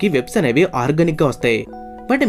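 A voice speaking over faint background music. Near the end the speech stops and a chime of several held tones sounds.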